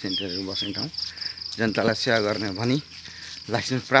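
A continuous high-pitched insect trill, pulsing rapidly and evenly, under a man's speaking voice.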